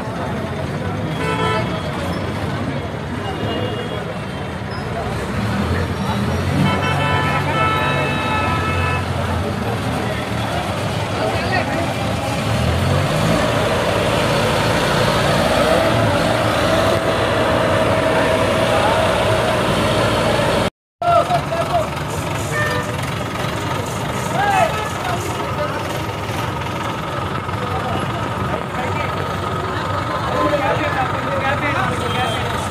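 Crowd voices over a truck-mounted crane's engine running while a statue is lifted, with a vehicle horn sounding twice in the first third, each blast a couple of seconds long.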